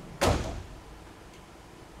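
A single sharp thump about a quarter second in, dying away within half a second.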